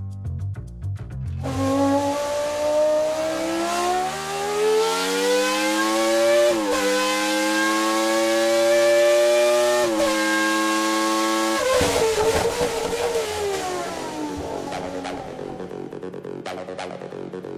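A car engine accelerating through the gears: its pitch climbs for about five seconds, drops with a shift, climbs again, drops with a second shift and cuts off about twelve seconds in, leaving a rougher rumble that fades.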